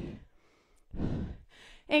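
A woman's single breath, about half a second long and picked up close on a headset microphone, taken about a second in during exertion in a standing leg-lift exercise.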